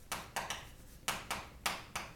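Chalk writing on a blackboard: a quick run of short taps and scrapes, about seven strokes in two seconds, as a word is written out letter by letter.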